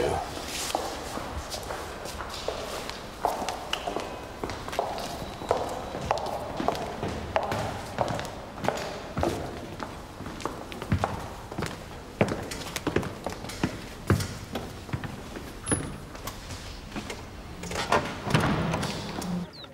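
Footsteps of several people on a hard stone floor, many irregular sharp steps echoing in a large hall, over a soft murmur of voices.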